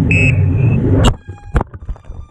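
FPV racing quadcopter's motors and rushing air, picked up by the onboard camera, cut off about a second in by a sharp impact as the drone crashes into dry grass. Scattered knocks and rustles follow as it tumbles and comes to rest.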